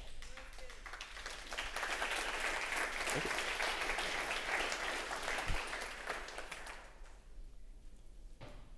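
Audience applauding: the clapping swells over the first couple of seconds, holds, then dies away about seven seconds in.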